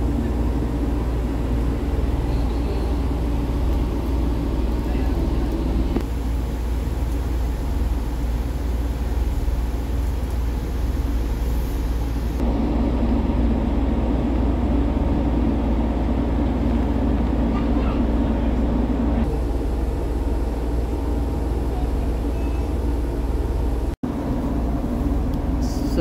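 Class 144 Pacer diesel railbus's underfloor diesel engine idling at a standstill, a steady low hum heard inside the carriage that shifts in tone a few times.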